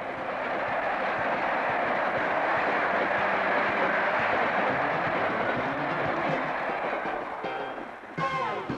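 Passenger train coaches rolling past on the track: a steady rushing rail noise that builds toward the middle and fades near the end as the train draws away.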